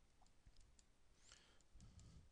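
Near silence with a few faint, scattered clicks: a stylus tapping on a tablet screen as handwriting begins.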